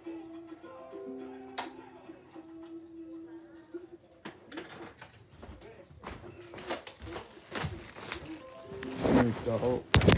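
Faint background music with a few held notes, then crinkling and rustling as plastic shrink-wrap is pulled off a DVD case, with handling knocks close to the microphone growing louder toward the end.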